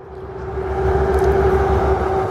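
Vehicle noise swelling over about the first second, then holding steady, with a constant hum and a low pulsing rumble.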